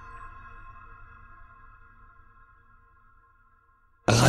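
A held synthesizer chord of several steady tones ringing out and fading slowly away to near silence: the tail end of an electronic music piece.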